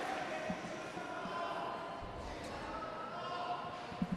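Sports-hall ambience between bouts: a low murmur of distant voices echoing in a large hall, with a couple of faint thuds.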